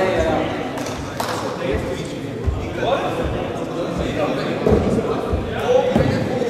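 Indistinct voices of several men talking in a large sports hall, with a couple of short knocks.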